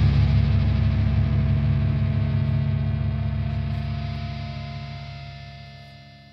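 The closing distorted electric-guitar chord of a heavy metal song, held and ringing out with no drums, fading away slowly to the song's end.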